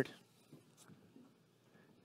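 Near silence: faint room tone in a hall, with a few very faint ticks.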